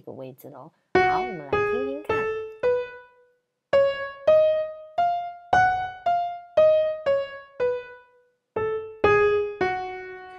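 Piano-tone keyboard playing an F-sharp natural minor scale one note at a time, about two notes a second. It climbs an octave with a short pause after the fourth note, then comes back down.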